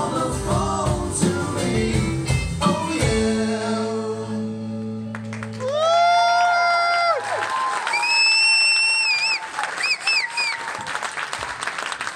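A live rock band of guitars, drums, piano and keyboard plays its last bars and ends on a held final chord that rings out a few seconds in. Audience applause follows, with a long cheer and shrill whistles over it.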